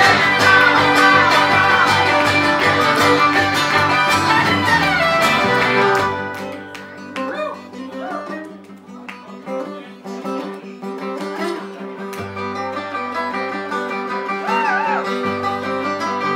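Acoustic string band playing an instrumental passage on fiddle, acoustic guitars and upright bass in a bluegrass-folk style. It plays full and loud at first, drops suddenly to a quieter, sparser section about six seconds in, then slowly builds again.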